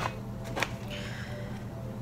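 A paper-based snack pouch being handled: one light tap about half a second in, then a faint brief rustle as the pouch is gripped at the top to be torn open.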